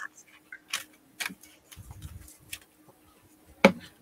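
Scattered small clicks and taps from a plastic acrylic-paint bottle and its cap being handled, with the sharpest click about three and a half seconds in.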